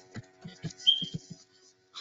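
Computer keyboard typing: a quick run of about ten keystrokes at an uneven pace, over a faint steady hum.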